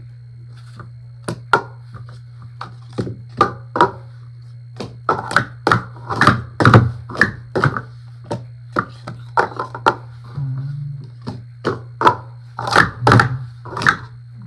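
Plastic Speed Stacks sport-stacking cups clacking as they are stacked up into pyramids and swept back down onto a stacking mat: quick irregular runs of sharp clicks, densest in the middle and near the end. A steady low hum runs underneath.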